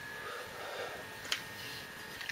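Quiet handling of small plastic toy cars: low background noise with one short faint plastic click about a second and a third in.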